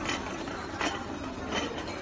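Wheeled restaurant serving robot rolling across a tiled floor: a steady rumble with a few sharp clacks, about three in two seconds.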